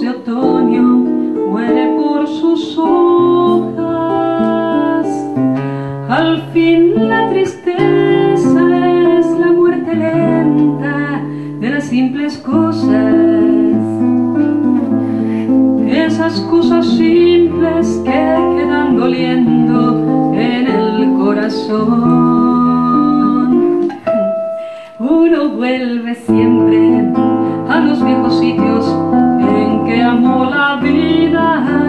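A woman singing a slow ballad into a microphone, accompanied by a classical guitar.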